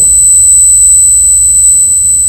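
Steady high-pitched electronic whine over a loud low hum: constant noise in the microphone and sound-system chain, heard in a gap in the talk.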